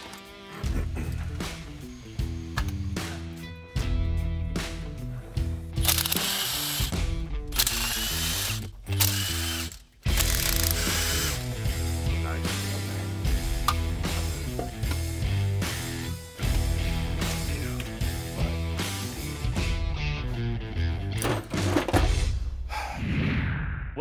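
Hand ratchet wrench clicking in runs as bolts are worked loose and tightened, over background music.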